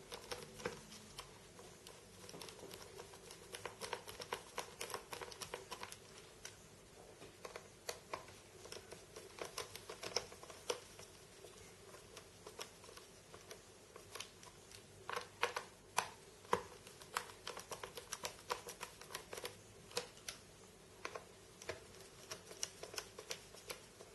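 Faint, irregular clicks and ticks from a precision screwdriver turning small screws down into a laptop's hard-drive retaining bracket, in short clusters with pauses between.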